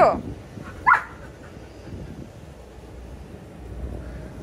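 Golden retriever whining at a closed glass balcony door: a wavering whine tails off at the start, then one short, high yip rises sharply in pitch about a second in.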